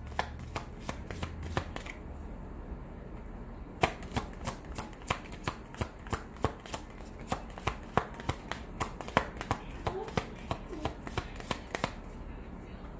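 A deck of tarot cards being shuffled by hand: a run of quick card flicks and slaps, thinning out for a moment about two seconds in, then going on at about four a second.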